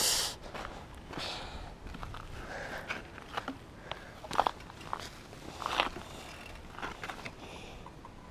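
Footsteps on a dirt trail and scattered clicks and knocks as a mountain bike is picked up off the ground and handled.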